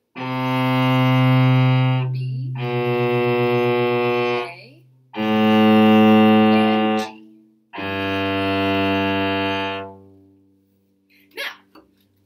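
Solo cello bowing the last four notes of a descending one-octave G major scale: C, B, A, then the open G string. Each note is held about two seconds, with short breaks between the bow strokes.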